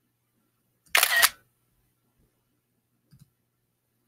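Camera-shutter sound effect from screen-capture software taking a screenshot: one short, loud two-part snap about a second in. A faint double click follows a little after three seconds.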